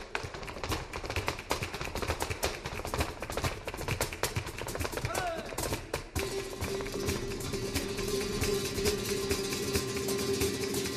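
Flamenco zapateado: rapid heel and toe strikes of a dancer's boots on the stage floor, with a short vocal call about five seconds in. From about six seconds a steady held note joins the strikes.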